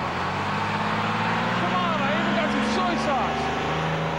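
Street noise dominated by a bus engine running steadily close by, with voices over it in the middle.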